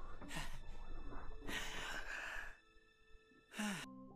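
A soft, long exhale, a sigh, from an animated character's voice, with a short spoken word near the end.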